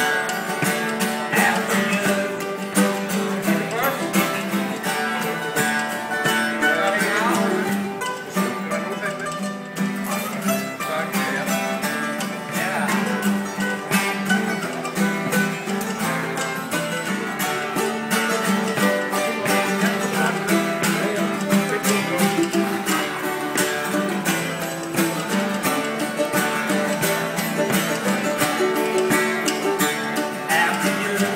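Acoustic string-band instrumental break: a mandolin and an acoustic guitar playing together, with the steady clatter of spoons keeping time.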